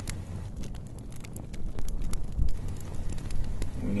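Campfire crackling with irregular sharp pops, over a low rumble of wind on the microphone.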